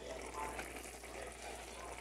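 Hot-dog sausages simmering in a tomato-and-pepper sauce in a lidded frying pan, giving a faint, steady bubbling hiss as the lid is lifted off.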